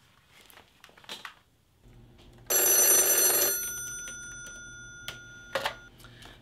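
An old-style telephone bell rings once, about two and a half seconds in: a loud burst for about a second that then rings on and slowly fades. Two short knocks follow near the end.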